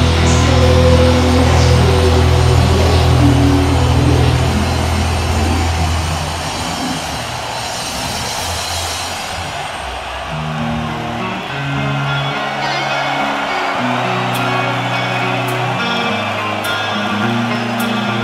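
Live heavy metal band: a distorted chord is held and rings out, fading over the first six seconds. Around ten seconds in, a clean electric guitar starts picking a slow melodic arpeggio, the start of the song's quiet clean interlude, with crowd noise behind it.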